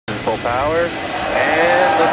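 Falcon 9 rocket at liftoff: the nine Merlin engines make a steady noise that starts abruptly, with excited human voices calling out over it.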